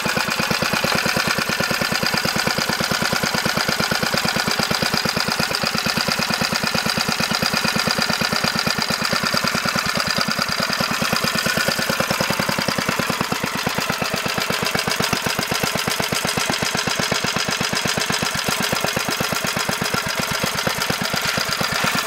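1976 Briggs & Stratton model 60102 two-horsepower single-cylinder engine running at a low, slow idle: a steady, even chug of firing pulses.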